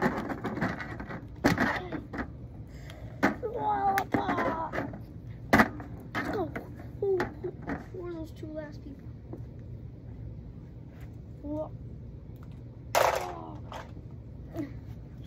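A boy's voice in short untranscribed snatches and vocal noises, with sharp clicks and knocks of plastic wrestling action figures being handled against a toy wrestling ring, the sharpest knock about five and a half seconds in.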